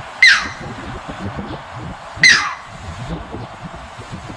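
Striated heron giving two sharp calls about two seconds apart, each sliding quickly down in pitch, over a low, steady background rumble.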